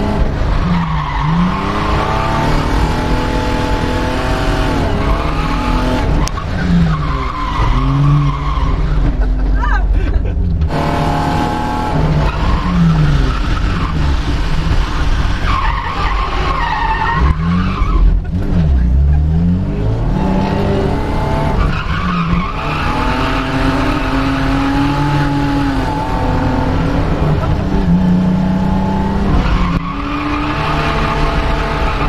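BMW E36 325i's 2.5-litre straight-six engine heard from inside the cabin while drifting. Its pitch drops and climbs sharply every few seconds as the throttle is lifted and reapplied, with tyres skidding and squealing.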